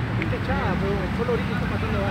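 Players' voices calling out across a football pitch, faint and scattered, over a steady low background rumble.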